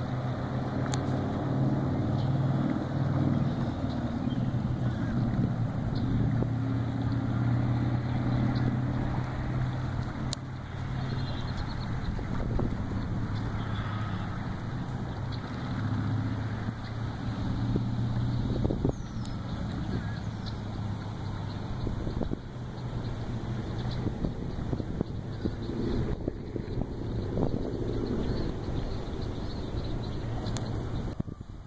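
Wind buffeting the microphone, a steady low rumble that swells and eases throughout.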